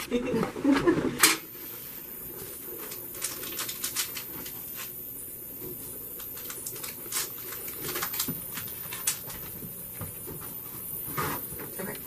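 A short laugh, then a quiet room with scattered light clicks and rustles of hands handling things, several of them sharp ticks spaced irregularly a second or so apart.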